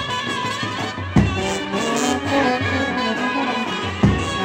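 Brass band practice: trumpets played through a microphone carry a sustained Indian film-style melody, with a loud bass drum stroke about a second in and another at the very end.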